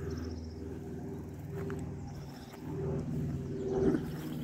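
An aircraft passing overhead: a low, many-toned droning hum that holds steady and swells in the last second.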